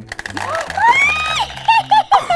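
Marbles clattering down a clear plastic tube as a stick is pulled in a marble-drop stick game, followed by a loud rising "whoa" exclamation and a few short cries of surprise. Low background music runs under it.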